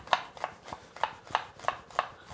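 Chef's knife chopping an onion on a bamboo cutting board, the blade knocking on the board about three times a second.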